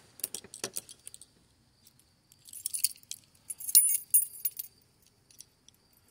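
A bunch of keys jangling and clinking at a steel padlock on a gate hasp while the lock is worked with a key. A few light clicks come in the first second, then two bouts of high jingling in the middle, the second louder.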